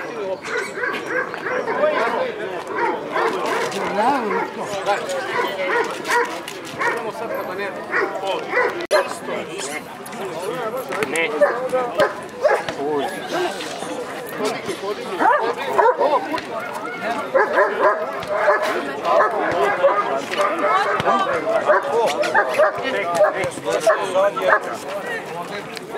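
Dobermans barking repeatedly, the barks overlapping with steady crowd chatter.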